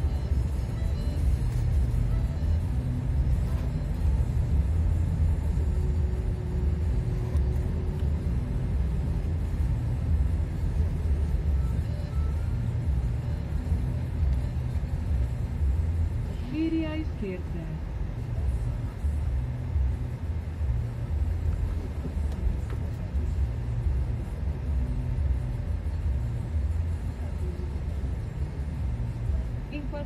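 Steady low rumble of a car's engine and tyres heard from inside the moving car's cabin. A brief wavering pitched sound stands out about 17 seconds in.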